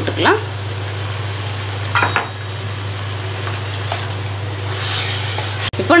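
Chicken pieces frying in a steel kadai: a soft, steady sizzle with a couple of short clicks from the wooden spatula against the pan, over a constant low hum.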